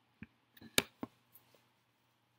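Handling noise: a few soft clicks and knocks, the loudest just under a second in, as the camera is swung round and a hand moves across the couch toward the dog.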